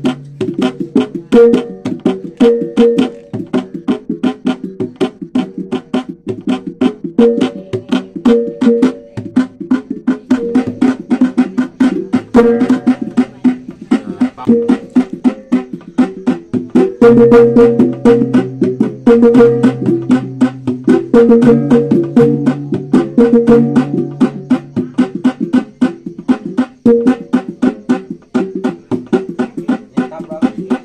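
Sumbanese funeral percussion (tabbung): a hand drum beaten in a fast, steady stream of strokes, over ringing gongs that repeat short interlocking patterns. A deep gong rings louder in the second half.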